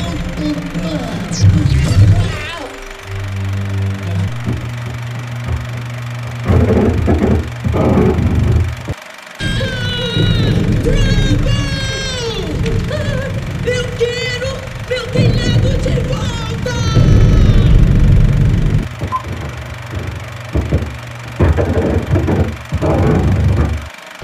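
Animated-film soundtrack: music over a sustained low bass, with a high warbling voice from about ten to eighteen seconds in.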